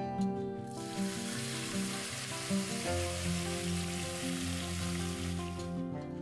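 Hot oil poured through a mesh strainer onto potato chunks in a pot, sizzling steadily for about five seconds and cutting off just before the end, over background guitar music.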